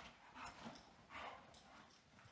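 Dog giving two short, faint whimpers.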